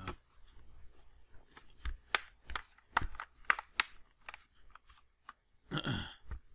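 Plastic back cover of an Acer Iconia One 10 tablet being pressed back onto the frame, its clips snapping into place in a quick, irregular series of sharp clicks.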